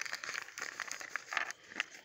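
Foil blind-bag packet crinkling and rustling in the hands as it is torn open, a run of irregular crackles that dies away near the end.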